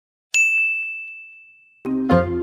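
A single bright chime, struck once, rings on one high note and fades away over about a second and a half. Just before the end, music with low plucked notes begins.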